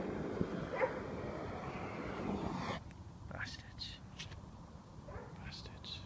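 Gas blowlamp burning with a steady rushing noise, cut off sharply about halfway through; a few faint short noises follow in the quiet.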